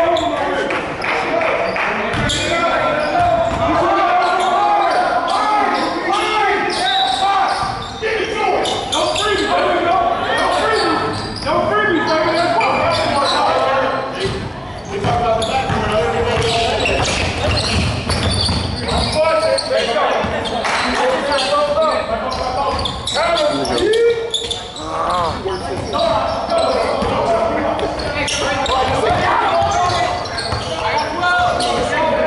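Basketball bouncing on a hardwood gym floor during play, with players' voices calling out over it, echoing in a large gym.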